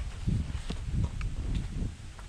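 Footsteps on a tiled walkway, a steady walking pace of about two to three steps a second, heard as low thuds with light clicks.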